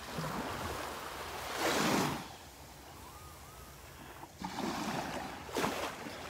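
Small Gulf waves washing up on a sandy beach, a steady hiss that swells twice, loudest about two seconds in and again near the end.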